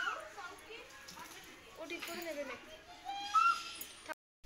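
Faint background voices, children talking and playing, with a brief louder call a little past three seconds.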